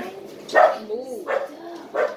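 A dog barking a few short times.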